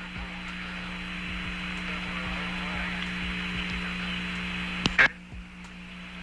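Open radio channel hiss over a steady low hum from the Apollo 14 air-to-ground voice link. The hiss cuts off with a sharp click about five seconds in.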